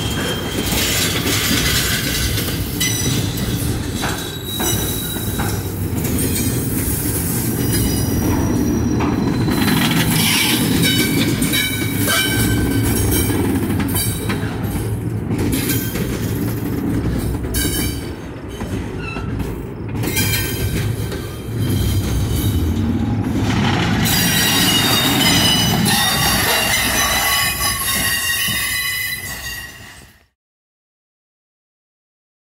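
Double-stack container cars of a freight train rolling past close by: a steady rumble of wheels on rail. High-pitched wheel flange squeal comes and goes over it and is loudest in the last several seconds.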